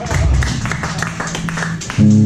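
Live rock band on stage playing loosely between songs: scattered drum and cymbal hits over a held low bass note.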